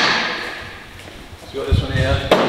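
The echo of a sharp bang dying away over about a second in a large, bare, hard-walled room, then a few low thuds near the end.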